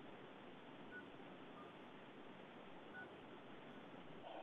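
Near silence with a low hiss and three faint, short telephone keypad beeps, about one, one and a half, and three seconds in: a caller dialing in to the meeting by phone.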